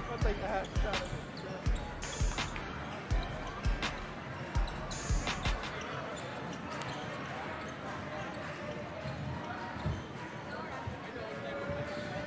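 Chatter of a crowd in a gymnasium, with a basketball bouncing on a hardwood floor about twice a second for the first five or six seconds before the bouncing stops.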